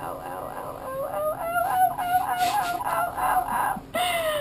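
A woman whimpering and squealing in pain as a needle injection goes in: a high, quavering moan that turns into a string of short squealing cries about a second in.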